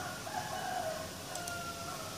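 A rooster crowing: one long crow of about two seconds.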